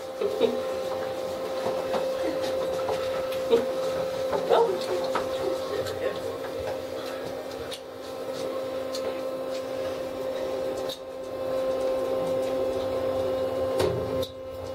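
Steady electrical hum of a Kone elevator car's ventilation fan, with the car doors sliding shut in the second half.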